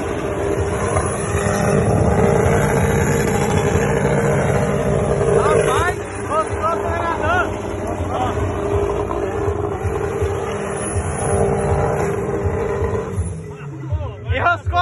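Chevrolet Chevette station wagon doing a burnout: the engine is held at high revs while the rear tyres spin on the asphalt, a steady loud noise that eases near the end. Brief shouts rise and fall over it about six seconds in.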